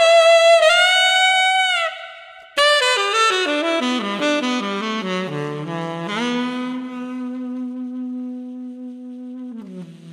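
Solo tenor saxophone played through a 10MFAN Celebration mouthpiece with a 7** (.108) tip opening, a Boston Sax 3 reed and a Francois Louis Pure Gold ligature, recorded dry with no EQ or compression. A high note held for about two seconds, a brief break, then a quick run falling into the low register and a scoop up into a long-held low note that steps down lower near the end.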